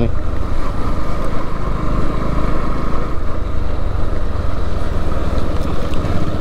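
Motorcycle engine running at a steady pace while riding a rough dirt track, heard from the rider's seat along with wind and road noise.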